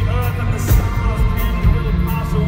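Live rock-pop band playing through a concert PA, recorded from the audience: a booming, heavy bass end under the music, with sharp drum hits every half second or so.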